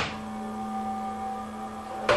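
A steady hum of held tones, a low note with a clearer higher one above it. A short noisy burst dies away at the very start.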